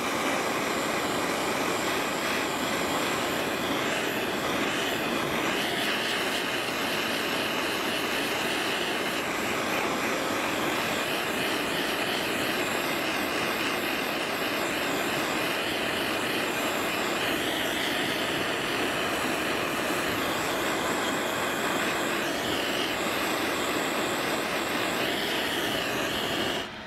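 Handheld jeweller's soldering torch burning with a steady flame hiss, heating a silver ring on a charcoal block to flow hard solder paste and join the bezel.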